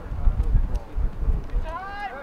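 Wind rumbling on the microphone, with distant voices calling out, most clearly near the end.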